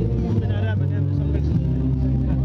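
Live band music played through a PA speaker, with held bass notes changing every half second or so. A voice sounds briefly over it about half a second in.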